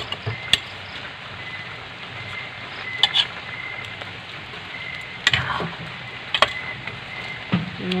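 Chopped cabbage sizzling and steaming in a pan over a wood fire, a steady hiss. A ladle stirs it, clinking and scraping against the pan a few times.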